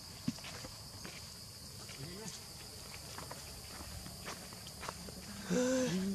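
Steady high-pitched insect drone, with scattered faint ticks and rustles. A brief voice sounds about two seconds in, and a louder one comes near the end.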